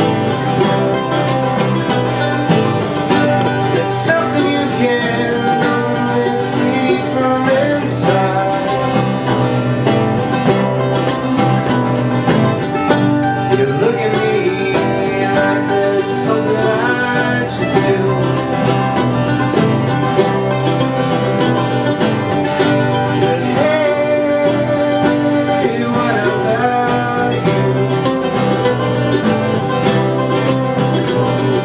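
Live acoustic string band playing a steady picked and strummed bluegrass-style tune on mandolin, acoustic guitars and bass.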